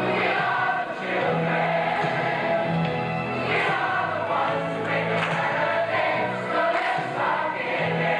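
A large mixed choir of men and women singing together, one continuous passage of music.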